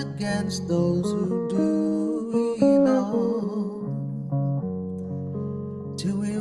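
Guitar playing a melodic instrumental passage of picked single notes and chords, changing note every fraction of a second and dying away gently toward the end.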